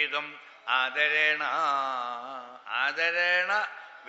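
A man chanting a verse in a slow, melodic recitation: two long drawn-out phrases with held notes.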